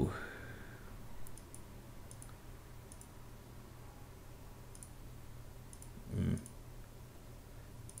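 Scattered faint computer mouse clicks over a steady low electrical hum, with a brief low vocal sound about six seconds in.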